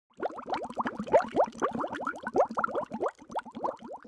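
Bubbling water: a dense stream of bubbles, each a quick rising blip, thinning out near the end.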